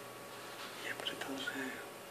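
A man whispering a few quiet, unclear words about halfway through.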